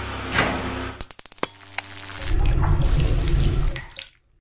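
Sound effects for an animated logo sting. A rushing noise over a low hum comes first, then a quick run of sharp clicks a little after a second in, then a loud low rumble that stops abruptly near the end.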